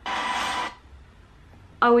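A short burst of rushing noise from the trailer's soundtrack, about two-thirds of a second long, starting and stopping abruptly.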